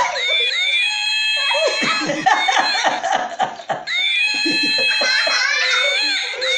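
A plush toy monkey's recorded laugh, high-pitched and electronic, playing through twice with a short break between the two runs.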